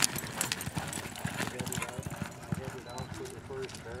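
Young filly galloping on arena dirt, hoofbeats coming as a rapid string of dull thuds. People's voices call out over them, and near the end a voice reads out a time.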